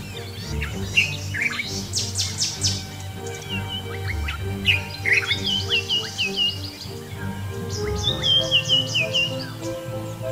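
Birds chirping in bursts of rapid trills and runs of short falling notes, over background music made of steady low sustained notes.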